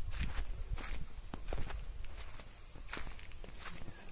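Footsteps of a person walking on a forest floor, short uneven crunches about once or twice a second, over a low rumble that fades about a second in.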